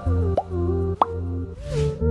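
Background music with sustained notes, over which two short rising pop sound effects play about half a second apart, the second louder, as a subscribe-button animation appears.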